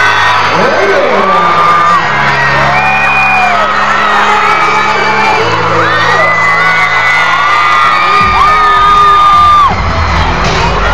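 Live concert music through an arena PA: sustained low keyboard chords that change every few seconds. Over them, fans near the phone let out high-pitched screams and whoops, each held for about a second.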